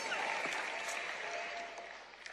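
Audience applause dying away.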